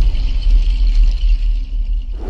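Deep, sustained bass rumble of a cinematic intro sting, with a faint high shimmer above it, easing slightly in level near the end.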